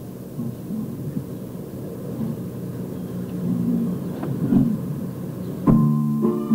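Low rumbling background noise from a vinyl LP playing, with a few clicks, in the gap between a spoken remark and a song; near the end an acoustic guitar comes in.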